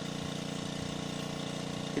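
A machine running with a steady drone at a constant pitch.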